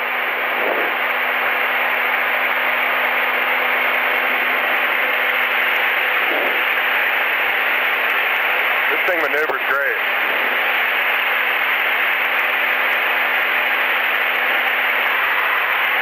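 Steady hiss of engine and wind noise in the airplane's cockpit, heard through an open intercom microphone with a thin, radio-like sound and a low steady hum underneath. The mic is keyed open, which the passenger takes to be her finger held on the talk button on the stick.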